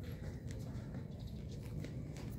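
Faint low background rumble of an open yard, with a few soft scattered clicks.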